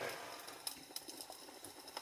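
Wood fire crackling softly, with scattered, irregular sharp pops from freshly added logs.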